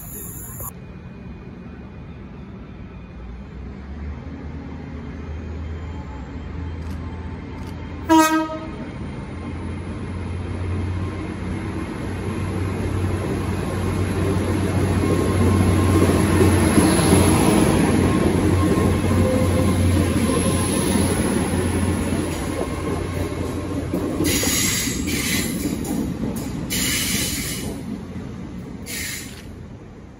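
A GWR Hitachi Intercity Express Train (Class 800/802) gives a short horn blast about eight seconds in, then runs along the platform. Its low hum and wheel rumble swell to a peak about halfway and then ease off slowly, with a faint high whine rising over them.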